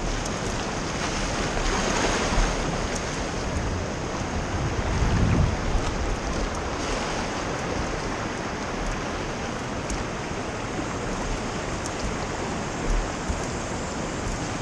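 Continuous rush of river water flowing and churning around a whitewater raft, with oar blades splashing as they dip, and wind on the microphone. There is a swell in the rushing about two seconds in and a low rumbling surge around five seconds.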